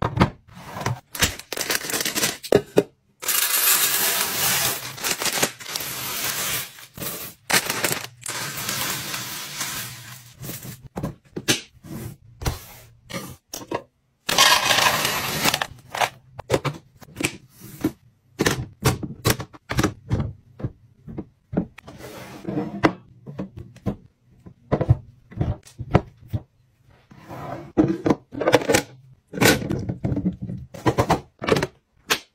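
Items and containers being handled and set down during restocking: a rapid run of taps, knocks and clatters, with three longer stretches of continuous crackle, the first about three seconds in and the last near the middle.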